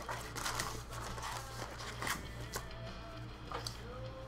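Quiet background music, with faint crinkling and rustling as foil trading-card packs are pulled out of a cardboard box.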